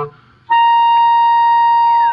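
Clarinet playing a single high, steady sustained note that starts about half a second in: the top of the instrument's range in a low-to-high range demonstration.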